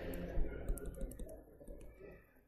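Faint, irregular clicks and taps of pen input on a digital writing surface as a dashed line and a label are drawn, over a low steady hum.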